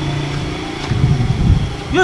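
A motor vehicle engine running with a steady hum.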